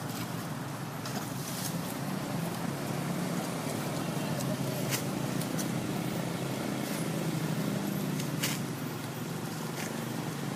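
Steady road traffic: motorbikes and motorbike-drawn tuk-tuks running past with a constant low engine hum. Two sharp clicks stand out, about five seconds in and again past eight seconds.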